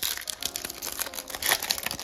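Foil wrapper of a Topps baseball card pack crinkling and crackling as fingers work its crimped edge open, with a louder crackle about one and a half seconds in.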